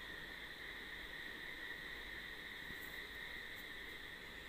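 Faint room tone with a steady high-pitched whine that holds one pitch throughout.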